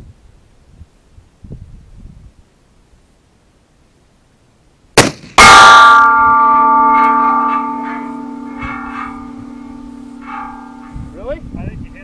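A single shot from a Thompson/Center Contender pistol in 7mm TCU about five seconds in, then a split second later a loud metallic clang from a hit steel target plate. The plate rings on with several steady tones that fade slowly over about six seconds.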